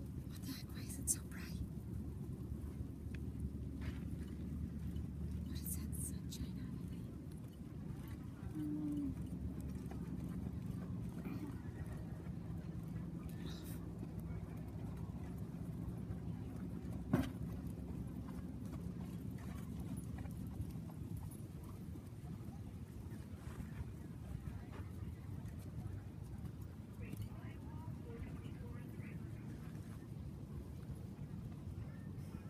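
Outdoor ambience: a steady low rumble with faint, indistinct voices and a single sharp click about halfway through.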